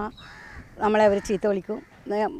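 A woman's voice speaking a short phrase about a second in, between brief pauses.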